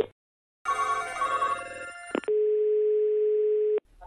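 Telephone line sounds between calls: a short run of changing electronic tones, a click, then one steady ringback tone about a second and a half long as the next call rings through.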